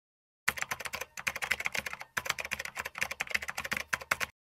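Typing sound effect: rapid keystroke clicks starting about half a second in, in three runs broken by short pauses about one and two seconds in.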